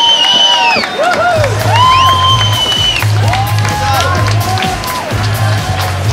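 Music with a pulsing bass beat that comes in about a second and a half in, under people cheering with long high-pitched whoops.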